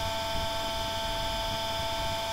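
A synthesized cartoon voice held flat on one sound as a long, unchanging electronic drone of several steady pitches, a drawn-out "Why?" cry.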